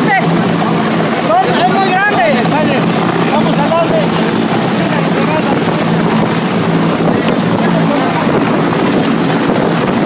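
A steady mechanical drone with a low hum runs throughout. A man's raised voice sits over it in the first couple of seconds.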